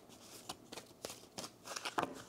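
A tarot deck being shuffled by hand: a series of short card clicks and flicks, with a quicker flurry near the end as the deck is squared.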